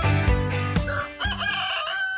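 Background music with a steady beat that stops about a second in, followed by a rooster crowing once, a long call that runs on past the end.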